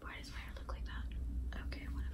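A young woman whispering softly, a few quiet broken words.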